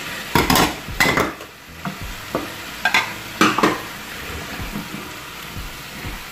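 Wooden spatula stirring and scraping vegetables in a frying pan, several sharp scrapes in the first four seconds, over a steady sizzle as the pork broth just poured in heats.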